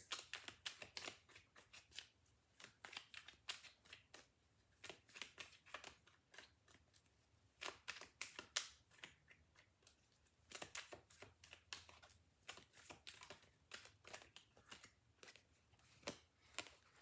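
Tarot deck being shuffled by hand: faint, irregular soft clicks and flicks of the cards, in denser flurries near the middle and again a little later.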